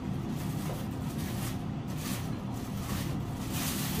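Packing paper rustling as cookware is handled and lifted out of a cardboard box, in a few brief rustles over a steady low background hum.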